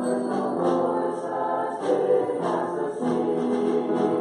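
Church choir singing a Christmas prelude, several voices holding notes together in harmony and moving from note to note.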